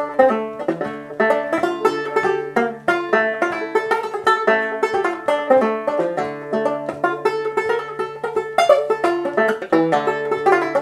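A solo banjo tune played with the fingers: a steady stream of quick plucked notes over a recurring low bass note.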